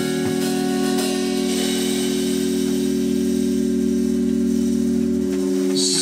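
Live jazz band of electric bass, drum kit and keyboard holding one long chord to end a tune, with a cymbal wash building underneath from about a second and a half in. The bass note drops out near the end.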